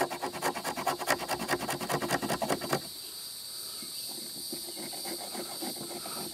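The spine scraper of a knife is rasped in quick, rapid strokes along a stick of fatwood (resin-soaked pine), shaving off fine scrapings for tinder. The scraping stops about three seconds in, leaving a steady high hiss.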